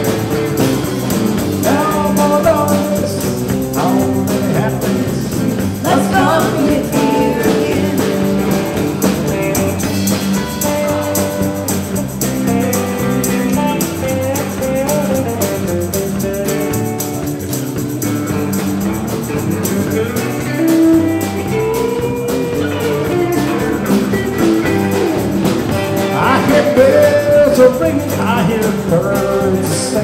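Live rock band playing: electric guitars, bass, drums and keyboard, recorded with the levels set too hot.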